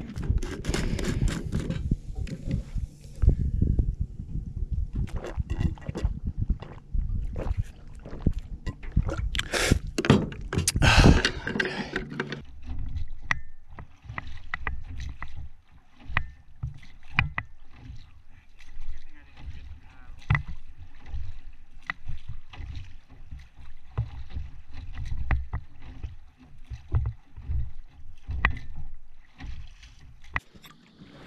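Gear clattering and knocking inside a small boat, then, after about twelve seconds, quieter strokes about one every second or so as the boat is paddled by hand across calm water with its outboard motor dead.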